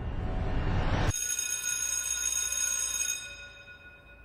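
Sound-design transition effect: a rising swell of noise cuts off sharply about a second in. A bright, bell-like chime follows and rings out over about two seconds before fading.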